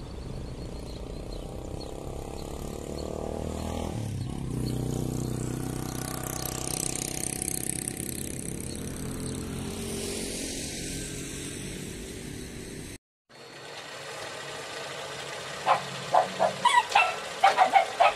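Outdoor street ambience with a motor vehicle's engine running and passing, its pitch shifting a few seconds in. It cuts off abruptly, then a run of sharp rhythmic hits starts near the end.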